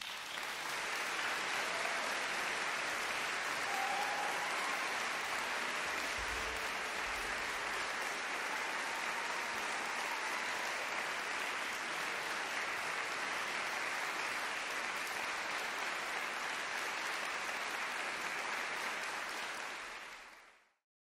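Audience applauding steadily, fading out at the very end.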